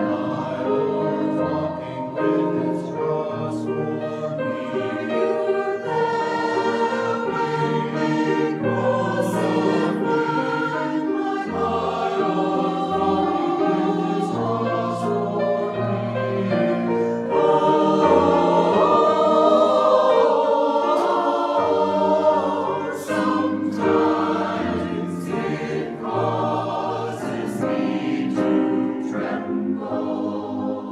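Mixed choir of men's and women's voices singing in parts, in sustained chords, swelling a little louder for a few seconds past the middle.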